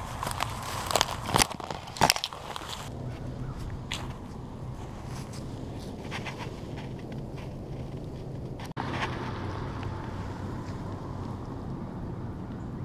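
Dry grass and brush crackling and rustling underfoot as a dog and walker push through it, with sharp snaps in the first two seconds. After that, steady low background noise with a few faint crackles.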